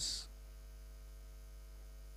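Steady electrical mains hum in the recording, low and even, heard through a pause in speech; the hiss of the last spoken syllable trails off at the very start.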